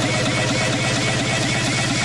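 A low, engine-like rhythmic rumble of about ten pulses a second, held steady, then stopping suddenly.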